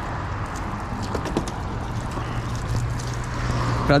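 Garden hose nozzle spraying water onto a car's bodywork, a steady hiss, with a low steady hum underneath.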